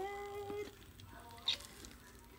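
A person's voice holds a short, level tone for under a second, then a metal spoon ticks faintly against a foam plate, with one sharp tick about one and a half seconds in.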